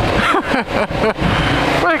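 Kasinski Comet GTR 650's V-twin engine running at low speed in traffic, under steady wind rush on the microphone.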